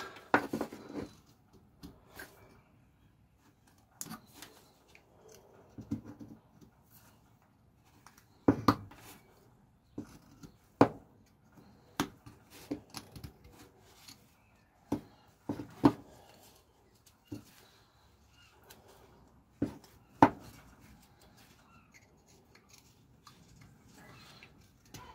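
Carving knife slicing thin shavings from a fresh green stick: short, irregular cutting clicks and scrapes, a few sharper and louder than the rest.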